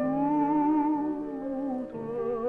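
Tenor holding one long sung note with a gentle vibrato over a soft piano accompaniment; the note ends just before the two seconds are up.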